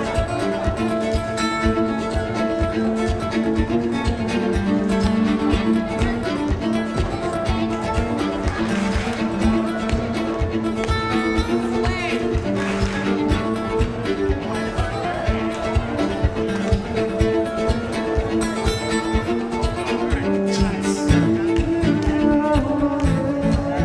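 Live fiddle and guitar dance music, a tune played with a steady, driving beat.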